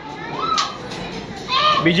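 Children's voices calling out, with a single sharp crack of a firecracker going off about half a second in.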